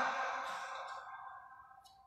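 A pause in a man's amplified speech: his last words die away slowly in the room's echo, then a short, quick breath in just before he speaks again.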